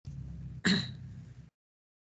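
A woman's single brief chuckle over a low steady hum from an open microphone; the sound then cuts off completely about one and a half seconds in.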